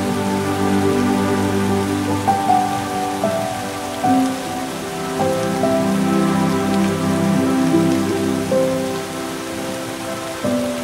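Slow background music of held, overlapping notes that shift in pitch every second or so, over a steady rain-like hiss.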